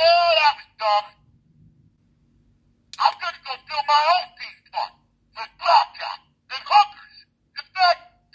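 Bender's recorded robot voice speaking short phrases: one phrase at the start, then, after a pause of about two seconds, a quick run of further phrases. The voice sounds thin and telephone-like.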